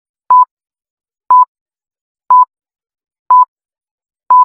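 Short electronic beeps at one steady high pitch, one each second, four in all, each starting with a faint click.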